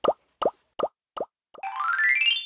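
Cartoon sound effects: a run of short pitched plops, about two and a half a second, then a rising whistle-like glide starting about one and a half seconds in as balloons float up across the picture.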